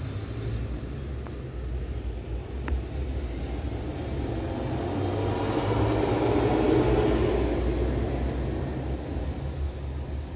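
A vehicle passing by: a rushing noise builds to a peak about two-thirds of the way through and then fades, over a steady low rumble.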